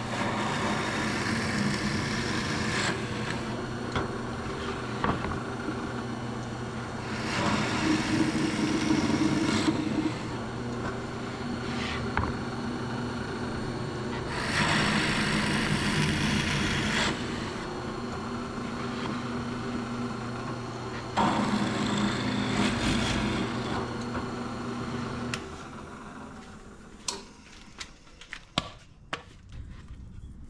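Drill press motor running steadily while a 5/16-inch twist bit bores four holes through 3/4-inch MDF, each cut a louder rush of noise lasting two to three seconds. The motor is switched off about 25 seconds in, followed by a few light knocks.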